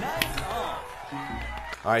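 Background music with a low, stepping bass line mixed with voices from the clip, and one sharp click about a quarter second in.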